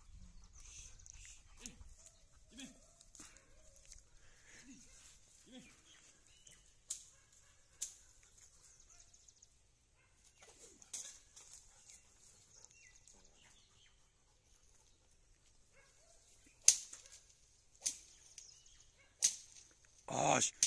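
Faint rustling in dry grass and brush, with scattered sharp snaps; the loudest snap comes about three seconds before the end.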